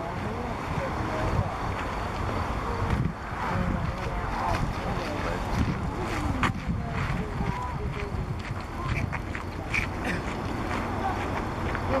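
Outdoor beach ambience: wind buffeting the microphone, with faint, indistinct voices of people in the background.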